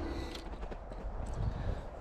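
A few soft, irregular footsteps in snow.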